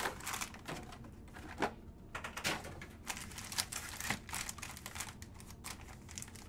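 Sealed foil trading-card packs being shuffled and stacked by hand: irregular light clicks and taps as the packs knock together.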